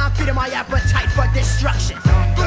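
1990s hip hop track playing: a beat over long, heavy bass notes that break off briefly about half a second in and again near the end, with short vocal snippets above.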